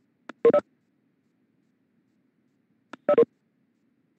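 A short electronic beep sounds twice, about two and a half seconds apart. Each beep is led by a faint click and has the same few-note pattern both times.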